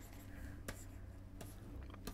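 Faint stylus strokes on a drawing tablet: light scratching of the pen tip as short highlight marks are drawn, with a couple of sharp taps, over a low steady hum.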